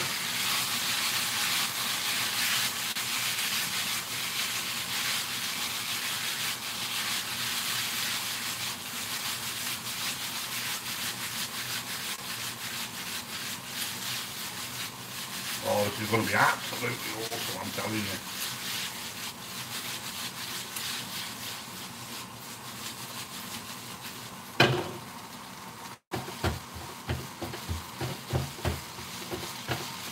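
Chow mein noodles sizzling in a non-stick wok over a gas flame while the wok is tossed, the sizzle fading slowly. The wok knocks down onto the burner grate about 25 seconds in, followed by quick scraping and tapping of a spatula in the pan near the end.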